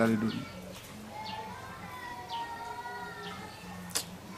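Birds calling in the background: two low drawn-out notes and several short, high falling chirps.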